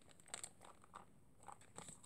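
Faint, scattered crinkles and light clicks of small packaged sauce pouches being handled and turned over in the hands.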